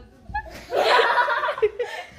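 A woman laughing: a loud burst of laughter about two-thirds of a second in, trailing off into shorter bits of laughter.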